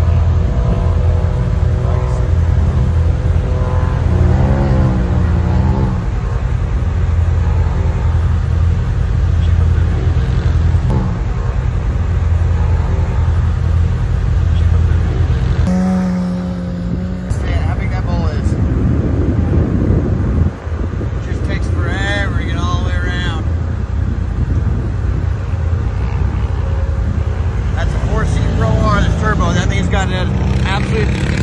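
Side-by-side UTV engines at the dunes: a steady low idle, then about halfway through a four-seat UTV on paddle tires revs and pulls away through the sand. Voices are heard at times over the engine sound.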